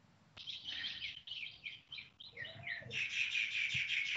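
Birds chirping: a rapid series of short, high notes that starts abruptly about a third of a second in and becomes denser and louder in the last second.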